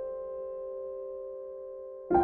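Background piano music: a single held chord slowly fading away, with no new notes struck.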